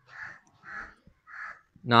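A crow cawing: three short caws about half a second apart, then a man's voice starts near the end.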